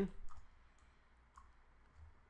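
A few faint computer mouse clicks over quiet room tone, as nodes are wired up in the software.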